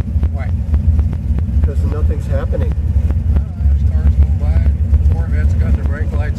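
Hot-rodded 1967 Oldsmobile convertible engine running at low cruising speed with a deep, steady exhaust rumble, heard from inside the open car. People's voices come and go over it.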